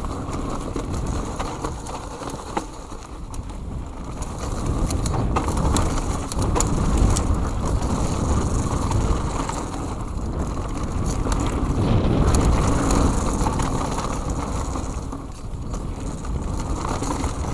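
Mountain bike riding fast down a dirt trail: wind rushing over the camera's microphone and tyres rolling on dirt, with scattered clicks and rattles from the bike. The rushing swells louder in two stretches.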